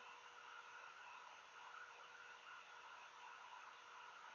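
Near silence: faint steady room tone with a faint hum.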